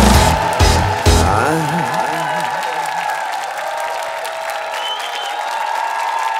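A live pop band ends the song with two final hits in the first second and a half. A held keyboard note then rings on and fades while the audience applauds.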